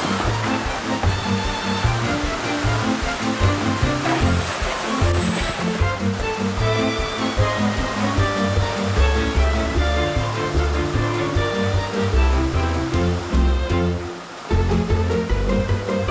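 Background music with a low, steady beat and sustained notes, mixed over a steady rushing noise that fades out about six seconds in.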